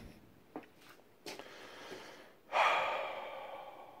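A man sighs, one long breathy exhale that starts suddenly just past halfway and fades away. A few faint clicks and handling knocks come before it.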